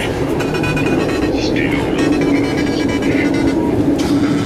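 Loud, unintelligible voices mixed with music over a steady low rumble.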